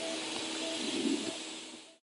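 Steady background hiss with a faint low hum and a few short, faint tones, fading out to silence near the end.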